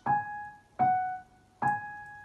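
Yamaha digital piano playing three single notes, one about every 0.8 s, in a slow finger-strengthening exercise. Each note is struck cleanly and left to fade before the next, and the middle one is a step lower.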